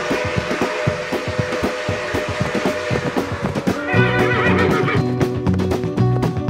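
Title-theme music with horse sound effects: fast hoofbeats over a held note, then a horse whinnying about four seconds in as bass and guitar music come in.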